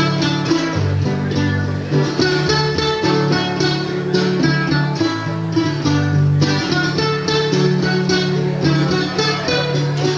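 Solo acoustic blues guitar, fingerpicked: a run of plucked melody notes over bass notes.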